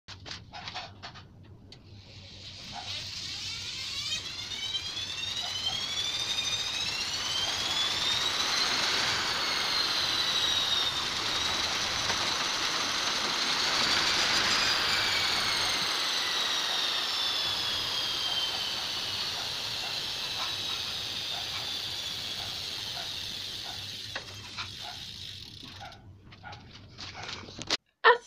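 Chain and rear wheel of an upside-down bicycle whirring as the pedals are cranked by hand, a whine that climbs in pitch for several seconds as it speeds up, peaks twice, then falls slowly as the wheel winds down. Light ticks at the very start and as it slows near the end.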